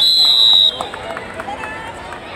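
Kabaddi referee's whistle: one loud, high, steady blast that cuts off under a second in, signalling the tackle of a raider. Shouting voices follow.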